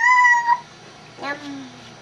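A toddler calling "Mommy" in a high, squealing voice: one held high note that ends about half a second in, then a shorter call that falls in pitch a little after a second in.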